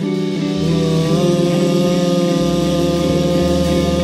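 Live soul-groove band music in an instrumental passage without vocals: sustained guitar chords, with a bass line coming in about half a second in.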